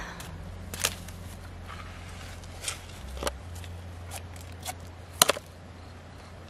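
Large freshwater mussel shells clicking and knocking against each other and the gravelly ground as they are handled and gathered into a wicker basket: a handful of sharp clicks, the loudest about five seconds in.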